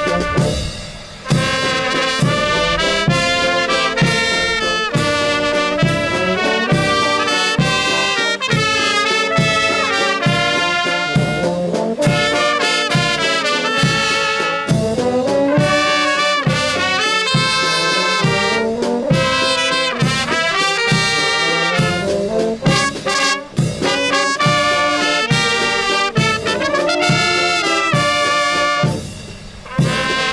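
Brass band playing: trumpets, horns and tubas sounding a melody over a bass drum and hand cymbals keeping a steady beat. The music breaks off briefly about a second in and again near the end.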